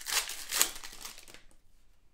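Plastic trading-card pack wrapper being torn open and crinkled by hand, with two sharper rips in the first second, then fading to a faint rustle as the cards are slid out.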